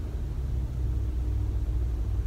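Steady low rumble of a car heard from inside the cabin while driving, with a faint steady hum over it.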